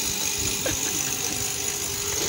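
Steady street traffic noise with a vehicle engine running at idle.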